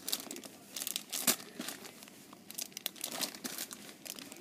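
Clear plastic packaging bags crinkling as they are handled and shifted about, in irregular crackles with a sharper one about a second in.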